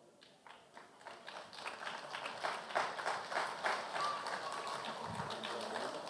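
Audience applauding, starting about a second in and holding at a moderate, even level.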